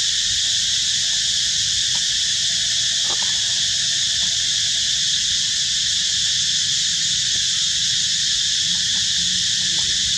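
Steady, high-pitched drone of an insect chorus, unbroken throughout, with a faint thin tone in the first half.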